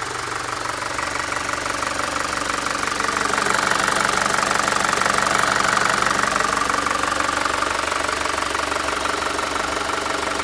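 Mitsubishi Rosa's 4M51 four-cylinder diesel engine idling steadily, heard through the open engine hatch in the cab. It grows louder for a few seconds in the middle, then eases back.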